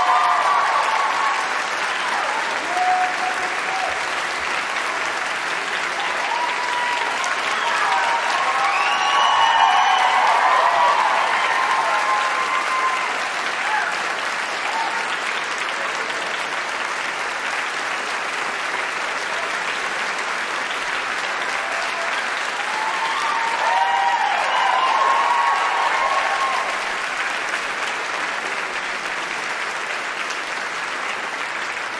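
A large audience applauding steadily in a hall. Cheering voices rise above the clapping at the start, again about eight to twelve seconds in, and once more near the end.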